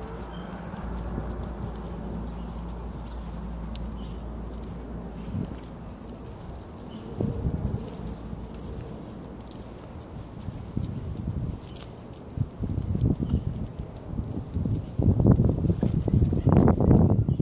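Footsteps on pavement over a steady low hum, with louder uneven rumbling building in the last few seconds.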